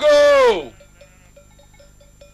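A man's long shouted call, "O, a, go!", held on one pitch and then falling away about two-thirds of a second in. Faint light clinks follow.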